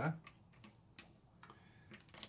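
Light, irregular clicks and ticks, about half a dozen over two seconds, as small makeup items are handled.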